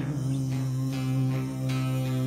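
Bağlama (Turkish long-necked lute) playing between sung lines: strummed strokes over a steady low held tone.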